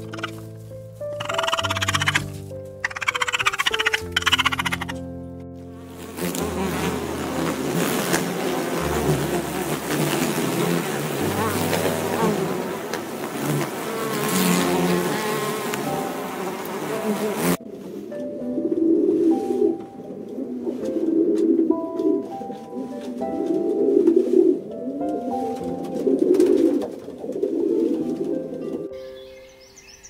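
Soft background music throughout, with a wasp buzzing loudly from about six seconds in until it cuts off suddenly past the middle. Before it come short bursts of raccoon kits chittering as they squabble. After it comes a low sound repeated about every two seconds.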